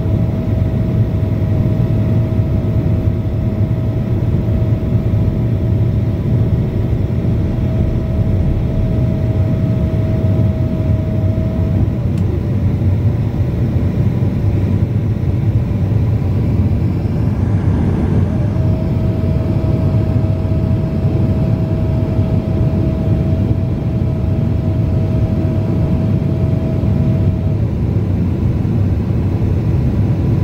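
Steady cabin noise inside a Boeing 767-400 on approach with flaps extended: a loud, low rumble of the engines and air rushing past the airframe. A thin steady tone rides on top, dropping out for several seconds just before the midpoint and again near the end.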